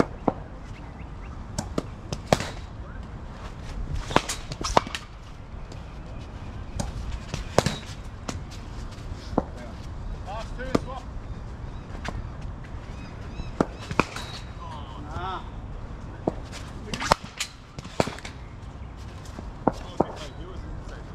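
Cricket nets: repeated sharp cracks of bats striking cricket balls, more than a dozen, irregularly spaced, with faint voices in the background.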